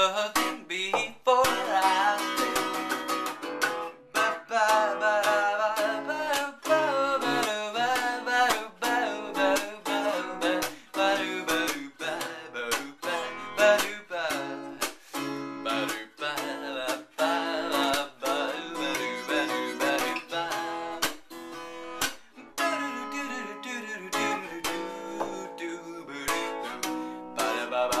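Acoustic guitar strummed in a steady, rhythmic chord pattern.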